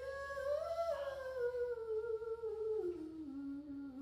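A woman's voice through a PA holds one long sung note that rises slightly, then slides slowly down in pitch, with almost no instruments heard. A low steady hum runs underneath.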